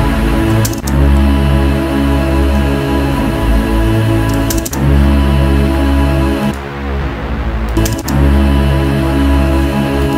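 Low, sustained synthesizer pad from a software synth playing long held notes while pad presets are auditioned one after another. Brief clicks come about a second in, near the middle and about eight seconds in, where the notes change or a new preset loads, and the sound thins out just before the last click.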